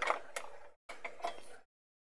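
Two short bursts of light clicking and rattling from paintbrushes being handled as a different brush is picked up.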